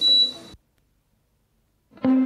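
A single high electronic beep of about half a second as the background music stops, then near silence for more than a second.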